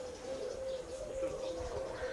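Outdoor birdsong: a low call held on nearly one pitch, repeated with brief breaks and dips, with faint higher chirps of small birds.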